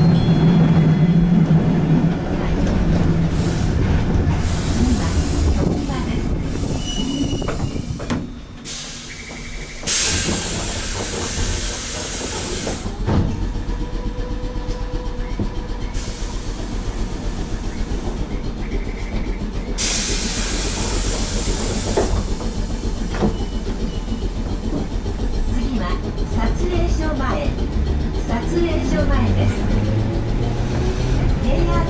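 Keifuku Mobo 621 tram running on the rails, heard from inside the cab: a steady rumble of wheels and running gear. Twice, from about ten to twelve seconds in and again from about sixteen to twenty-two seconds, a high hiss rises over the rumble.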